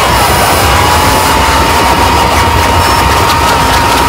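Harsh noise music: a loud, dense wall of distorted noise over a low rumble, with a steady mid-pitched tone that dips briefly just after the start and then holds level.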